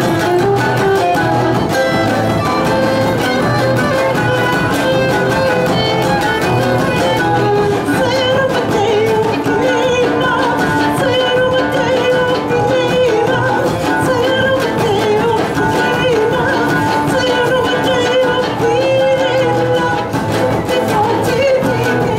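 Live acoustic band playing a Romani folk song: a fiddle carries the melody over strummed acoustic guitar, oud and a large drum beaten with a stick.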